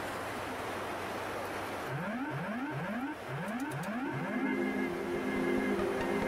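Steady rushing air noise of an airliner cockpit in flight. About two seconds in it gives way to background music: five quick rising swoops, then a steady held chord.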